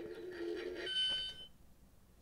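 Shocking Liar lie-detector toy scanning: a steady low electronic hum, then about a second in a higher half-second beep as it gives its reading.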